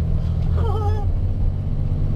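Steady low engine and road drone of a vehicle being driven, heard from inside the cab, with a brief vocal sound about half a second in.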